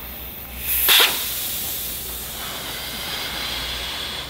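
Air escaping from a leather soccer ball's inner rubber bladder as a craft knife punctures it. There is a sharp burst of escaping air about a second in, then a steady hiss as the ball deflates.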